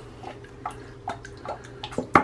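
Liquid bath soap squeezed from a plastic bottle and dripping into a filled bathtub: about five short, soft drips spread over two seconds.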